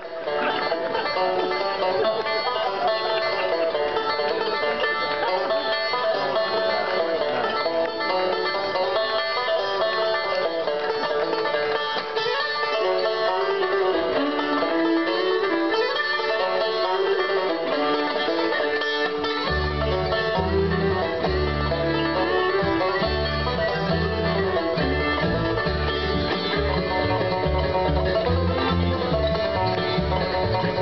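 Bluegrass band playing, led by five-string banjo picking with fiddle and mandolin. A low bass line joins about twenty seconds in.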